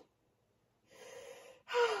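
A woman's breathing: a sharp breath drawn in about a second in, then a breathy sigh with a falling pitch near the end.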